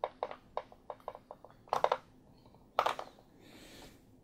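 Hard plastic clicks and knocks from a hand-pressed Play-Doh web extruder toy as it is worked and handled. A quick run of small taps comes over the first two seconds, with a louder clatter just before the two-second mark and another near three seconds, then a soft rubbing sound.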